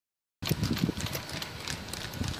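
Hooves of a pair of bullocks drawing a rekla racing cart, clip-clopping on asphalt in a quick, uneven run of knocks that begins a moment in.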